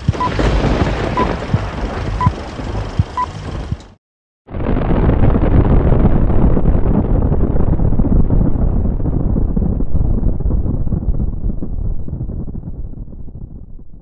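Film countdown leader sound: four short beeps a second apart over crackling noise. Then a brief silence and an explosion sound effect, a long loud rumble that fades out slowly over about ten seconds.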